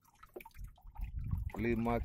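Faint drips and small splashes of seawater lapping at a small boat, with a low rumble about half a second to a second and a half in, then a man's voice near the end.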